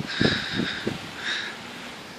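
Quiet outdoor background noise with a few soft low thumps in the first second.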